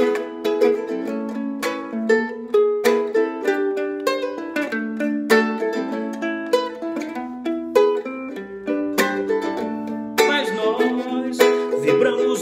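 Acoustic ukulele played solo as an instrumental passage. It is a melody of plucked notes stepping along, mixed with sharp strummed chords.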